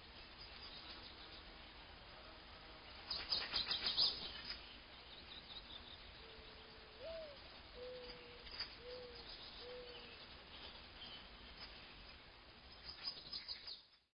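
Birds chirping faintly over a low steady hiss. A quick burst of high chirps comes about three seconds in and more come near the end, with a few lower whistled notes in between, one sliding upward.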